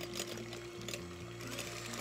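Electric hand mixer running at medium speed with a steady hum, its beaters whipping egg whites in a glass bowl, under background music.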